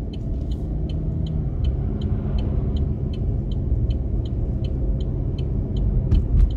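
Car cabin noise while driving at road speed: steady engine and tyre rumble, with a light, regular ticking about two or three times a second.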